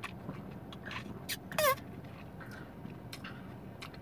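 A person drinking soda from a glass bottle: quiet swallowing with small clicks, and one brief squeak that falls in pitch partway through.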